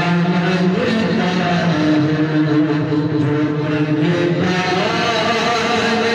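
A man singing an Urdu naat, drawing out long held notes that step to a new pitch every second or so.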